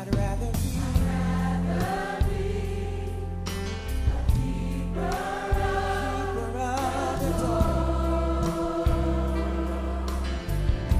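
Gospel choir singing, with a deep bass line and a steady beat underneath.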